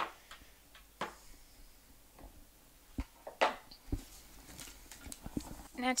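Cardstock being trimmed and handled on a hard worktop: a few light knocks and taps of paper and tools set down, with a short swish of a cut about halfway through.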